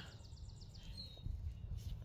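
Quiet outdoor background with a steady low rumble, and a single short, high bird chirp about halfway through.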